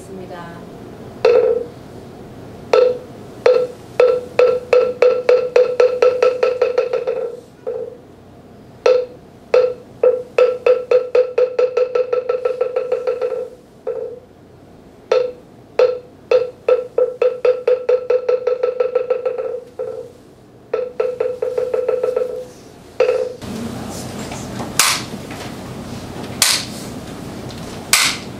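A moktak, the Korean Buddhist wooden fish, struck with a wooden mallet in the temple bowing rhythm: a few spaced strokes that speed up into a rapid roll that fades away. This happens three times, once for each bow, then a few single strokes. Near the end the strikes stop and a steady rustling follows as the congregation sits down.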